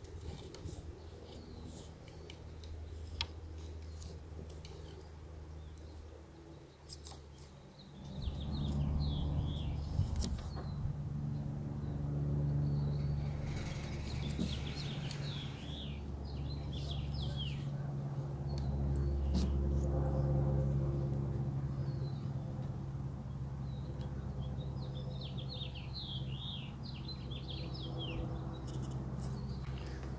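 Light plastic clicks and rubbing as a rear wiper blade is handled and fitted onto its arm, with small birds chirping in the background. About eight seconds in, a steady low mechanical hum starts and continues.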